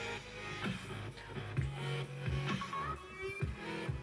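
A short musical intro jingle that starts abruptly, with a brief rising glide near the end.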